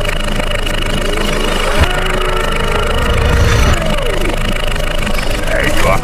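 Cartoon motor-vehicle engine sound effect running, mixed with cartoon character voice sounds; the low rumble grows stronger a little after three seconds.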